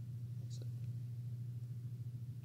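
A steady low hum in the recording during a pause in the talk, with a brief faint hiss about half a second in.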